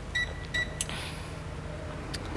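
Short, high electronic button beeps from a kitchen appliance, a couple in quick succession early on, followed by a sharp click just under a second in, over a low steady hum.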